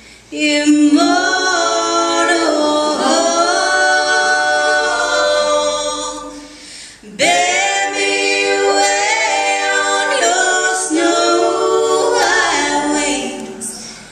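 A small group of voices singing a slow song in close harmony, unaccompanied. There are two long held phrases, each fading away at its end, with a short break about seven seconds in.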